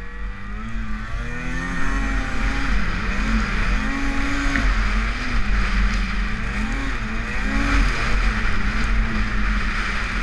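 Arctic Cat M8000 snowmobile's two-stroke 800 cc twin running under way, its pitch rising and falling several times as the throttle is worked, over a steady rush of wind noise.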